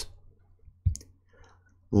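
A single short click a little under a second in, with faint room tone around it.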